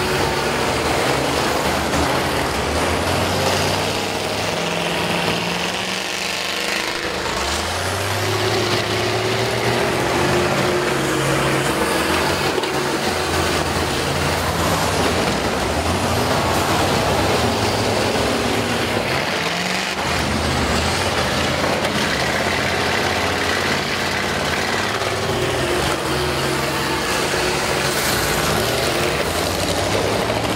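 Several school bus engines running and revving, with engine pitch climbing as they accelerate about seven seconds in and again about twenty seconds in.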